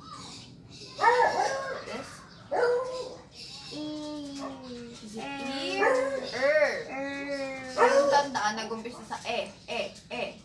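Voices repeatedly sounding out the phonics sound 'er', some held for nearly a second and some sliding up and down in pitch.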